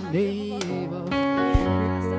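Live gospel worship music: a man's voice sings a short phrase over sustained instrumental chords and a steady bass, with one low thump about one and a half seconds in.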